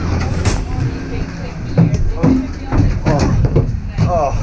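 Skier climbing into a gondola cabin: knocks and clatter of skis and poles against the cabin over a low, steady rumble of the gondola lift machinery, with some voices in the background.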